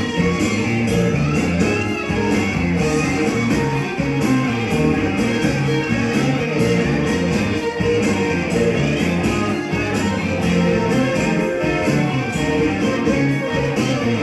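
Small live band playing, with an electric guitar and a keyboard over a steady beat.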